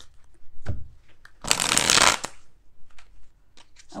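A deck of tarot cards being shuffled by hand: scattered card clicks, then a dense rush of card noise lasting under a second about a second and a half in, the loudest part.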